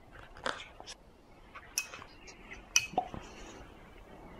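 A baby being spoon-fed puree: wet mouth and lip smacks with a few sharp clicks, the loudest near the end.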